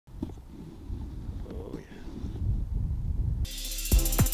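Low wind rumble on an outdoor microphone. About three and a half seconds in, intro music starts with steady tones and a drum hit near the end.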